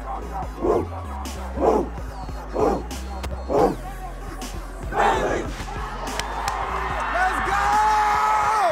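A football team shouting a pregame chant in unison, short loud shouts about once a second, over background music with a steady bass.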